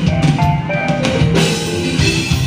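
A live rock band playing a loud instrumental passage without vocals. The drum kit, with bass drum and snare, is to the fore, and a few held pitched notes from keyboard or guitar sound over it.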